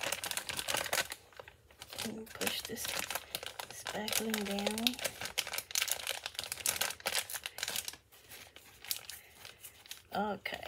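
Clear plastic piping bag crinkling as it is twisted and squeezed to push the frosting down toward the tip, in quick irregular rustles that die down near the end.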